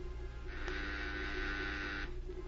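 A soft, held organ chord comes in partway through, faint over a steady low mains hum in the old radio transcription.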